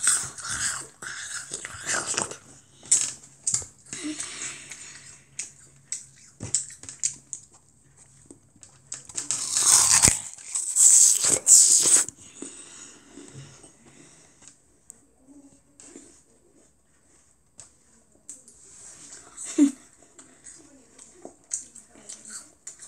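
A large raw apple being bitten and chewed right at the microphone: irregular wet crunching and mouth noise, loudest in a cluster around ten to twelve seconds in.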